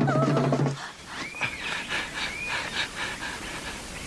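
Music cuts out under a second in, then a cartoon animal character pants hard, out of breath from wrestling. Two short squeaky cries rise and fall over the panting.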